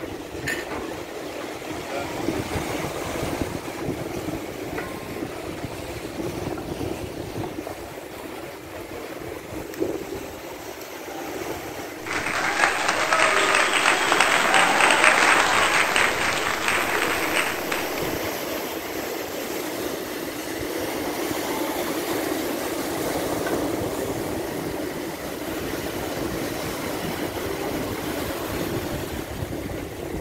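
Sea waves washing and breaking against a concrete-block breakwater: a steady surf noise, with a louder spell of rushing, splashing water starting abruptly about twelve seconds in and lasting several seconds.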